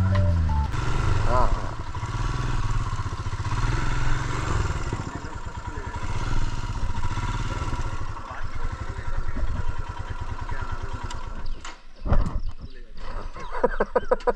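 Motorcycle engine running at low speed as the bike rides along and pulls up, heard through a helmet-mounted camera's microphone, with people's voices in the last couple of seconds.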